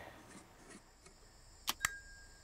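Low room tone, then two sharp clicks close together near the end, the second followed by a short faint high beep.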